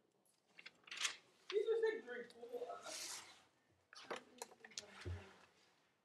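Paper sketchbook pages being handled and turned: a rustle of paper, a few light clicks and knocks, and a low thump about five seconds in. A person's voice is heard briefly about a second and a half in.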